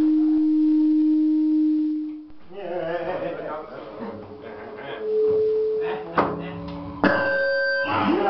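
Live electronic noise performance: a steady, pure held tone for about two seconds, then distorted vocal sounds made into a microphone, a second shorter held tone, and two sharp clicks. In the last second a harsher chord of several steady tones cuts in suddenly.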